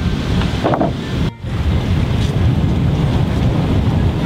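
Wind buffeting the camera microphone, a steady low rumble, broken by a brief dropout just over a second in.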